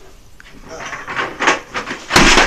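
Bathtub water sloshing and splashing as someone moves in it, with a few short splashes in the second half.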